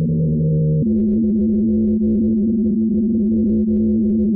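Recording of the 'singing ice' of an Antarctic ice shelf: a loud, low, steady hum of a few held tones that steps up in pitch about a second in.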